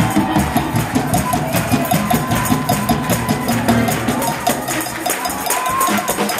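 Fast gospel praise music with a dense, even beat of drums and tambourine and a few held tones above it.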